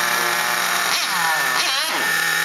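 Small glow-fuel engine of a Motonica nitro RC touring car running with a high buzz. Its pitch drops about a second in and wavers unsteadily near the end: it is stumbling, loaded up from sitting too long at idle, just before it cuts off.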